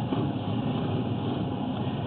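Steady mechanical drone with a low hum, without pauses or strokes.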